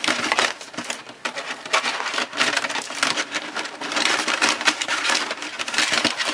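Thin plastic gallon milk jug crackling and crinkling under the hands as a string of holiday mini lights is pushed into it through a hole, a dense run of irregular crackles and clicks.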